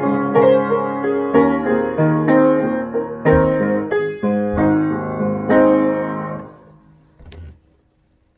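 Grand piano played in an improvisation: a series of struck chords and melody notes, the closing chord ringing and fading out about six and a half seconds in. A brief soft knock follows near the end.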